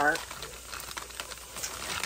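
Chicken, peppers and onions sizzling in a frying pan: a soft steady hiss with scattered light crackles.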